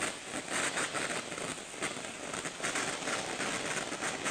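Oxyhydrogen (HHO) gas torch flame playing on a metal part: a steady hiss laced with dense fine crackling as sparks fly off the heating metal.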